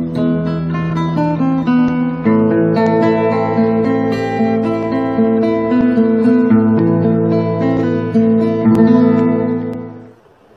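Acoustic guitar playing plucked notes and chords, dying away at the very end.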